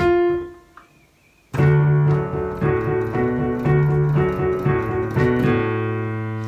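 Piano playing a rock and roll accompaniment with both hands. A note rings out and fades, and after a short gap, about a second and a half in, repeated chords start over a left-hand bass pattern, settling onto a held chord with a low bass note near the end.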